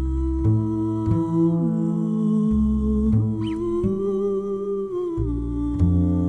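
Music: a wordless female voice humming long held notes that glide slowly between pitches, over low double bass notes that change every second or so.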